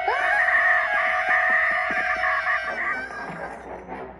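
A boy's long scream, rising at the start and then held steady for about two and a half seconds before it fades, heard through a laptop's speakers.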